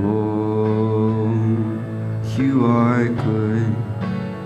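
Live worship music: a man sings long held notes over a strummed acoustic guitar. A new sung phrase with wavering pitch comes in a little past halfway.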